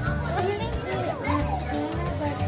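Children's voices chattering and calling over each other, with music playing underneath.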